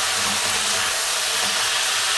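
Chunks of pork, onion and garlic sizzling in hot oil in a thin wok, a steady hiss.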